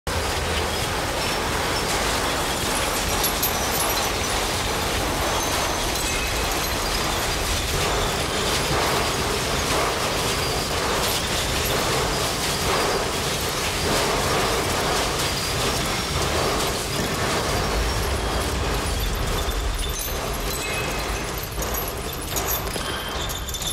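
Experimental industrial noise music: a dense, steady wash of machine-like rumble and clatter, with a faint pulsing through the middle.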